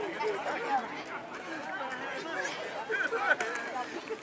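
Overlapping chatter and shouting from a crowd of sideline spectators, several voices at once with no clear words.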